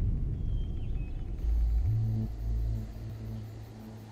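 Trailer sound design: a deep low rumble with a faint high whistled call in the first second. About two seconds in it gives way to a steady low synth drone with a fast, faint pulsing high above it, fading toward the end.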